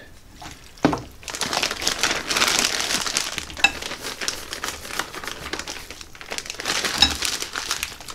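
Plastic zip-top bag crinkling steadily as it is opened and handled, with a sharp click about a second in and another near the end.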